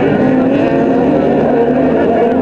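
Several autocross race cars running loud on a dirt track, their engines sounding together as they race past.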